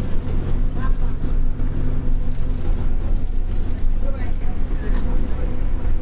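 A city bus running at steady speed, heard from inside its crowded passenger cabin as a continuous low drone, with passengers' voices over it.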